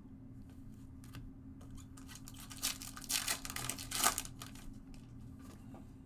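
A Topps Gold Label baseball card pack wrapper being torn open and crinkled by hand, in a cluster of rustling bursts about halfway through.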